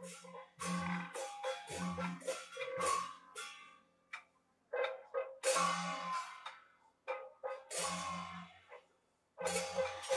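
Beiguan percussion band warming up: drum beats and struck metal gongs and cymbals ringing, in uneven spurts with short silences between them.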